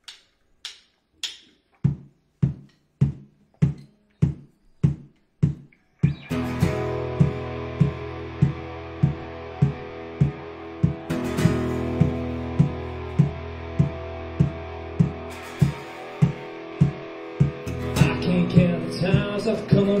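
Instrumental intro of an upbeat country-rock song by a small band with acoustic guitar, electric guitar and drums. It opens with a steady beat of single strikes about two a second that gets louder after about two seconds; about six seconds in, the guitars come in full over the same beat, and the vocal starts at the very end.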